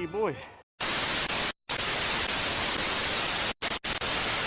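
Loud TV static hiss, used as a glitch end-screen effect, cut by a brief silent dropout about a second in and two more near the end. Just before it, a voice goes 'ooh' with a rising and falling pitch.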